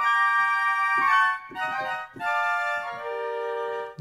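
A sampled orchestral phrase played back from a sample library: sustained chords that shift about every second, with a brief dip in the middle and a lower, quieter chord near the end.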